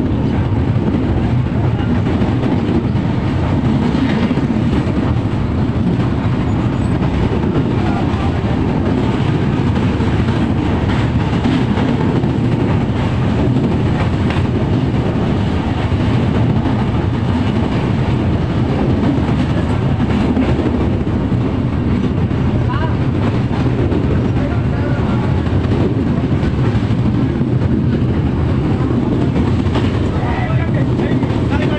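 Passenger train running at speed, heard from inside a coach by a barred window: a loud, steady rumble of the wheels on the rails with faint irregular clicks. Near the end the train is crossing a steel truss bridge.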